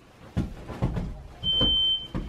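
A few soft low thumps, then about one and a half seconds in a smoke alarm starts sounding its shrill, steady tone, set off deliberately.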